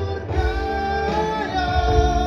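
A man singing long held notes into a handheld microphone, with instrumental accompaniment underneath.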